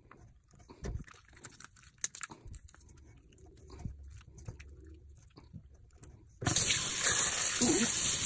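Faint wet clicks and knocks of hands pulling innards from a gutted milkfish, then about six seconds in a kitchen tap comes on and water runs hard into a stainless steel sink.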